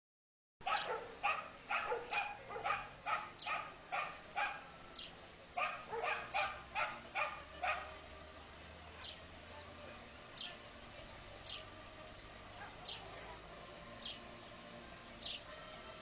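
A dog barking in quick succession, about three barks a second, starting suddenly just after the start and stopping about eight seconds in. After that a bird gives short high chirps that fall in pitch, about one a second.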